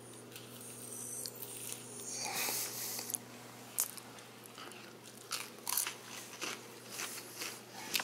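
A person biting into and chewing a piece of battered fried fish, with a soft noisy stretch a couple of seconds in and then a few scattered sharp crackles.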